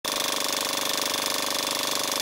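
Film projector sound effect: a rapid, even mechanical rattle over a steady hiss.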